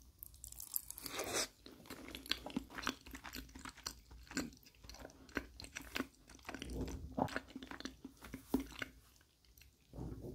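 Close-miked mouth sounds of a person chewing a mouthful of lasagna: irregular short clicks and smacks, with a denser, louder burst about a second in as the bite is taken off the fork. The chewing thins out near the end.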